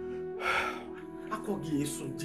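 Background film music with steady held tones. About half a second in comes a short breathy sound, followed by a few brief vocal fragments.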